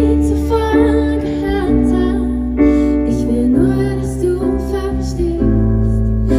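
A woman singing a slow piano ballad live, accompanying herself with sustained chords on a stage piano keyboard over a steady low bass note.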